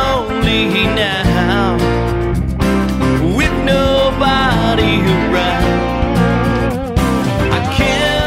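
A song: a man singing a wavering melody over guitar with a steady low bass line.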